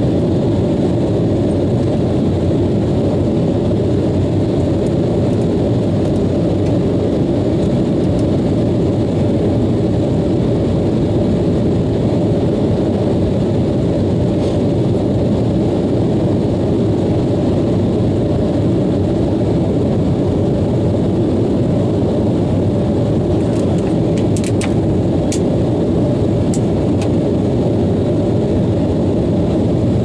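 Steady cabin noise of an Embraer 190 airliner in flight, a low even rush of its two CF34 turbofans and the airflow heard from a seat over the wing. A few faint ticks come through, mostly in the later part.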